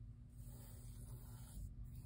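Faint scratch of a mechanical pencil's graphite lightly sketching a circle on sketchbook paper, a soft hiss lasting about a second and a half.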